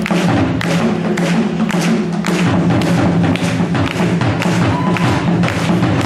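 West African drum ensemble playing a fast, steady rhythm: a hand-played djembe together with tall rope-tuned upright drums struck with sticks, several strikes a second throughout.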